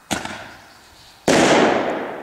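A 1-inch salute firework shell: a sharp crack as the lift charge fires it from its tube, then about a second later a much louder bang as the salute bursts overhead, trailing off slowly.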